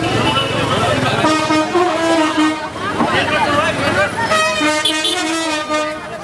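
Two long horn tones over a crowd of people talking, the first about a second in and the second near the end.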